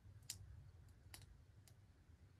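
Near silence with a faint low rumble and four short, sharp clicks at irregular spacing, two of them more distinct than the others.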